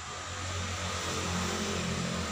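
A steady low hum over an even hiss, growing slightly louder.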